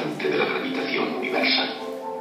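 Soundtrack of a documentary played through classroom speakers: a voice over background music.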